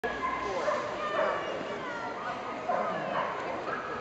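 A dog whining and yipping, over people talking.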